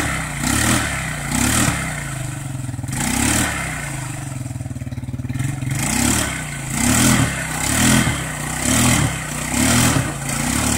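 Small ATV engine revved in repeated blips, swelling and dropping back about once a second toward the end, with steadier lower running between them. The quad is stuck in boggy reeds and being throttled to drive it free.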